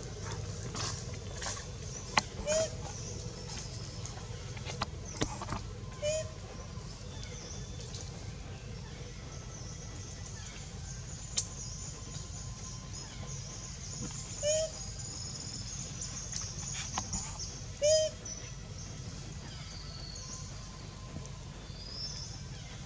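Short pitched animal calls, each a brief rising-and-falling note, repeating four times at intervals of about three to four seconds. Behind them are a steady high insect-like buzz and a few sharp clicks.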